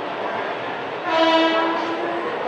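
A train horn sounds once, a single steady note lasting about a second and starting about halfway in, over the steady noise of a passenger train rolling slowly out along a station platform.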